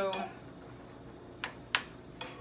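A spoon knocking twice against a frying pan about a second and a half in, two short sharp clinks, the second louder.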